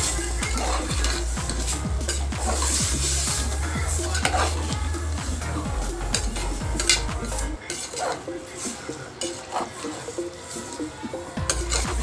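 Metal ladle stirring goat intestine pieces through fried onions in an aluminium pot, with irregular scrapes and knocks against the pot and a light sizzle of the hot oil.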